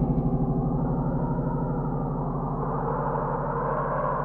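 Music: a sustained low synthesizer drone, several steady tones held together, throbbing in a fast even pulse, with a hazier upper layer swelling slightly near the end.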